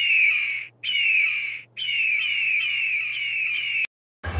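Eagle call: a run of high, piping notes, each falling in pitch, repeating several times a second. There are two short breaks in the first two seconds, and the calls cut off abruptly near the end.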